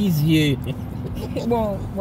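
Speech: a voice talking in short phrases over a steady low hum.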